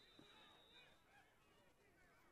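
Near silence: faint, distant field ambience with a thin steady tone that fades out about a second in.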